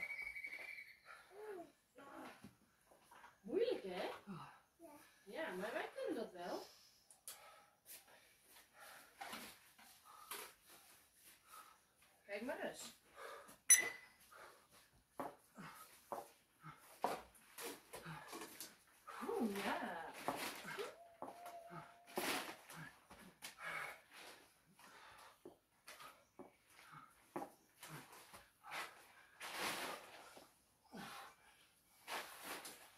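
Faint, intermittent talking in the background, with scattered small clicks and knocks and one sharper tap about fourteen seconds in.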